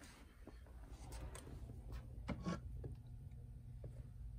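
Quiet room tone: a steady low hum with a few faint, short knocks and rustles of handling.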